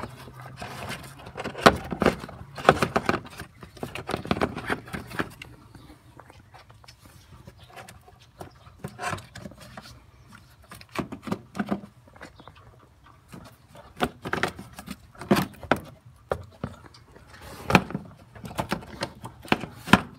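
Plastic air filter box lid and panel air filter being handled and seated in a car's engine bay: a run of irregular plastic knocks, clicks and rattles. A low steady hum sits under the first few seconds.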